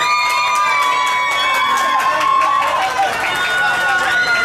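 A team of young men yelling and cheering in celebration, with long, high held shouts: one carries on for the first two and a half seconds and another begins near the end, over overlapping excited voices.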